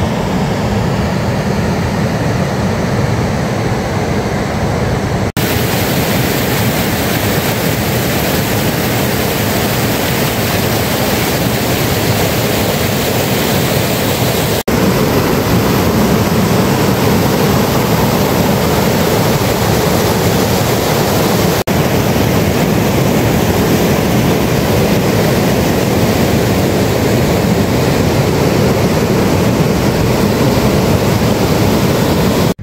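Loud, steady rush of a fast mountain stream tumbling over rocks. It is duller at first and brighter after about five seconds, changing slightly at each cut.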